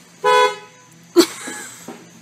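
A car horn gives one short honk, then about a second later comes a sudden loud, noisy burst that fades over most of a second.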